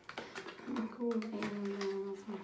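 Foil sachet of a face mask crinkling and clicking as it is picked open with long fingernails. A woman's held hum sounds for about a second and a half from partway in.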